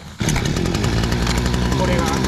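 Small air-cooled two-stroke outboard motor catching and starting about a quarter second in, then running steadily at a constant speed.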